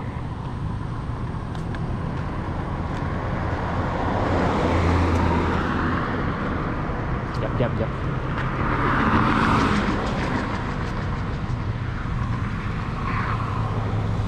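Road traffic: cars running on a multi-lane road with a steady low engine hum, swelling as a car goes by about nine seconds in.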